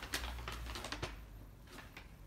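Light, irregular clicks and taps, several in the first second and fewer after, over a faint low hum.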